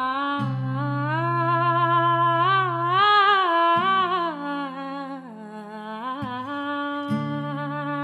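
A woman singing a wordless melody, with sliding and wavering notes that climb to a high point about three seconds in. Under the voice, low acoustic guitar chords ring and change every second or few.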